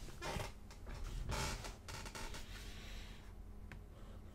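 Rustling handling noise from a pen and notebook being moved about, in three short bursts, then a small click near the end.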